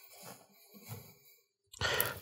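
Thick polenta slopping out of a stainless steel pot onto a wooden board: a few soft, quiet plops about half a second apart.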